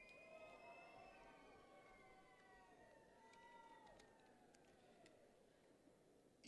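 Near silence in a pause between names, with a faint high tone that slowly falls in pitch and a few faint clicks.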